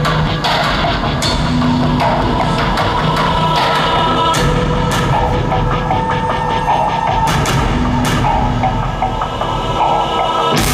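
Live rock band playing an instrumental passage, recorded from the audience: a steady drum beat under long held keyboard and guitar tones, loud throughout.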